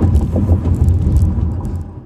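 Road and tyre noise inside the cabin of a moving Tesla electric car, a loud steady low rumble with no engine note, fading out at the very end.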